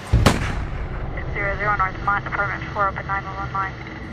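A single loud gunshot bang right at the start. About a second later a voice speaks for a couple of seconds, sounding thin and narrow.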